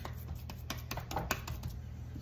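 Hands patting and pressing raw ground-beef meatloaf into shape in a ceramic baking dish: a run of soft, irregular taps and pats over a low steady hum.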